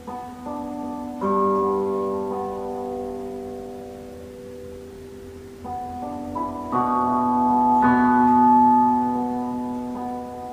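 Background music: slow piano chords, each struck and left to ring for a second or more, growing louder towards the end.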